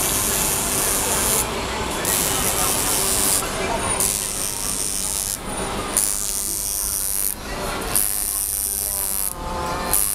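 Busy ambience with indistinct voices, and a high hiss that cuts in and out on a regular cycle of about two seconds.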